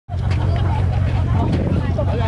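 Bentley Continental GT's engine idling steadily with a deep, even low drone, with people talking in the background.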